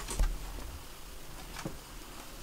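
Handling noise in a quiet room: a soft thump shortly after the start, a lighter tap later and a few faint clicks as a saxophone is lifted to the player's mouth.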